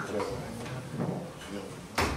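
Quiet room sound with faint, indistinct voices and some movement, then one sharp click right at the end.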